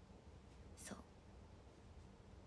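Near silence: room tone with a steady low hum, broken once, a little under a second in, by a short soft spoken word.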